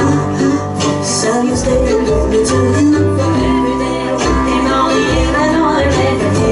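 Live bluegrass string band playing a tune: fiddle and mandolin lines over a plucked upright bass, with a steady beat.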